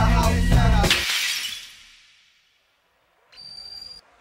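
Hip hop beat with rapping that cuts off about a second in, ending in a crashing, shattering noise that dies away over about a second. After a short silence a faint high steady tone starts near the end.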